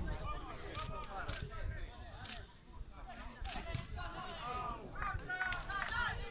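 Indistinct voices calling out across a football pitch, in short scattered bursts, over a low rumble of wind on the microphone.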